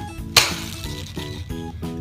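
A single sharp plastic click about a third of a second in, a finger flicking the Mouse Trap game's cheese-shaped spinner arrow. It sounds over background music with a quick steady beat.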